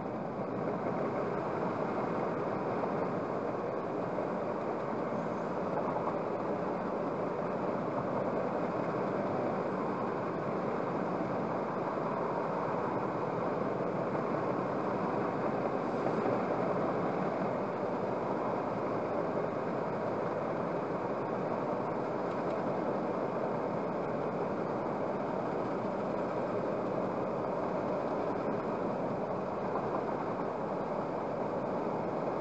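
Steady road noise inside a car cruising at about 80 km/h, picked up by a dashcam's microphone.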